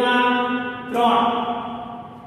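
A man's voice drawing out two long, held syllables in a sing-song way, each lasting about a second, the second fading toward the end.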